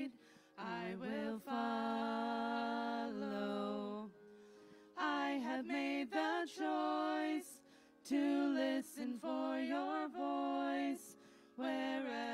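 Worship song being sung, the voice held on sustained notes in phrases, with short breaks between them.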